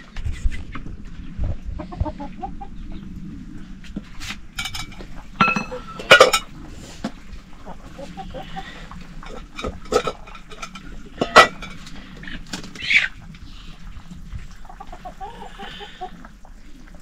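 Domestic chickens clucking, with short loud squawks about six and eleven seconds in and a rising call near thirteen seconds, over a steady low hum.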